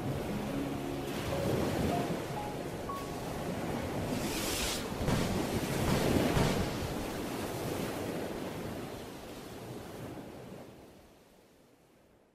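Ocean waves washing in and drawing back in slow swells, with a few faint soft notes in the first few seconds; the sound fades out near the end.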